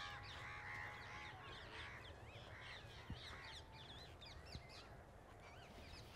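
Faint birds chirping and calling over and over, many short rising and falling calls overlapping, with a thin steady tone in the first second or so.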